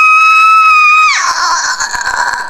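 A person screaming: one long, high, steady scream that drops lower and turns ragged about a second in.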